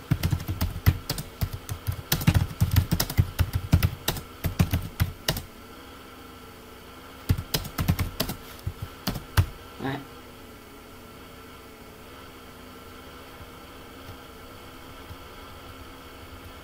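Typing on a computer keyboard: a rapid run of key clicks for about five seconds, then a second short run a couple of seconds later. After that only a faint steady hum remains.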